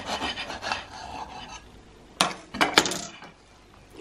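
A knife sawing through a grilled ciabatta sandwich, the crusty bread crackling and rasping under the blade, followed by a few sharp knocks a little over two seconds in as the cut finishes and the halves are handled on the plate.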